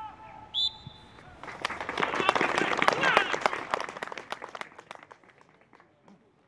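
A referee's whistle sounds once, briefly, about half a second in, signalling the end of a minute's silence. Applause follows, swelling and then fading out.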